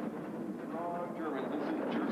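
A two-man bobsled running down the ice track, its runners making a steady low rumble, with voices over it during the second half.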